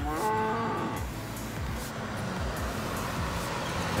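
A cow mooing once, a call of about a second that rises and falls, over a low steady rumble.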